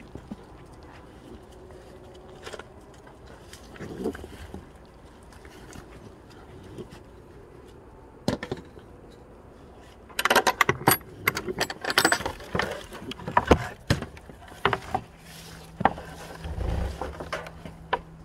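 A wooden gate and its metal hook-and-eye latch being worked open: a dense run of sharp rattling knocks and clicks lasting about four seconds, followed by a few scattered knocks.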